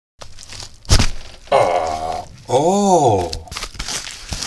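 A single sharp thunk about a second in, then a man's wordless vocal sounds, ending in a drawn-out exclamation that rises and falls in pitch.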